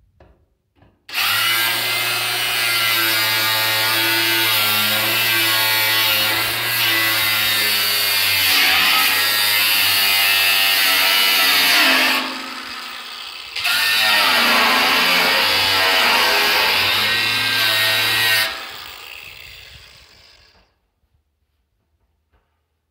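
Angle grinder cutting into the steel lid of a metal drum. It starts about a second in and runs under load, its pitch wavering as the disc bites. Just past halfway it eases off for about a second, then cuts again, and near the end it is switched off and winds down.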